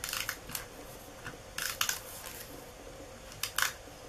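Snail tape-runner adhesive drawn in short strokes around the edge of a paper lace doily, giving small crackling clicks in three short bursts, with paper rustling under the hands.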